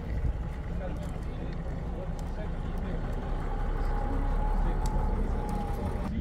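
A vehicle engine running with a steady low rumble that swells for a few seconds after the middle, while people talk in the background.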